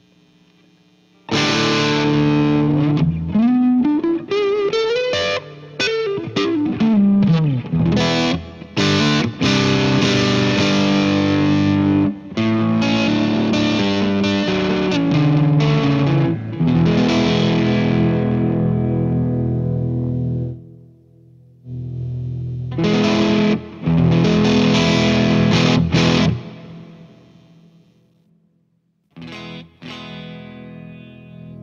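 Electric guitar, a Fender Telecaster played through an Orange Micro Dark Terror hybrid amp head into a miked speaker cabinet: chords and lead lines starting about a second in, with one long rise and fall in pitch early on. The playing stops for about two seconds two-thirds of the way through, resumes briefly, then falls silent before a last note rings near the end.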